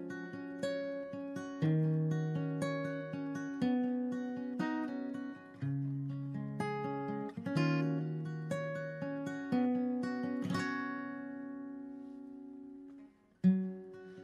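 Solo acoustic guitar picking chords, each note decaying after it is plucked. A last long chord rings out and fades away about thirteen seconds in, and a new chord is struck just before the end.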